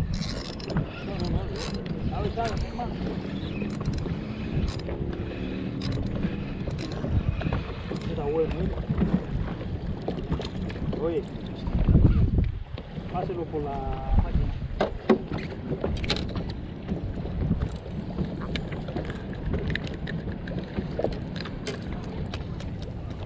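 Wind buffeting the microphone over choppy water lapping against a small boat, with scattered light knocks and clicks. A stronger gust or splash comes about twelve seconds in.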